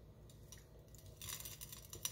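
Faint, light ticking of grated parmesan cheese sprinkled by hand onto a ceramic plate, a little louder in the second half, over a low steady room hum.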